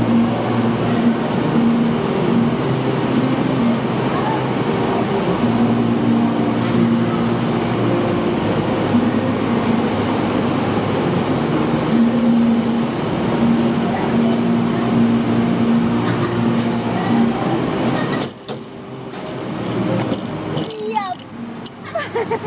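Go-kart engine running steadily with a low, even hum; the sound drops off abruptly about three-quarters of the way in.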